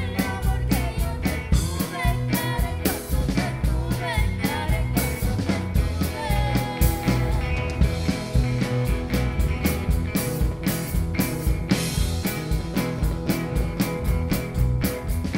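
Live rock band playing with electric guitar, electric bass and drum kit keeping a steady beat, with women's voices singing over the first few seconds.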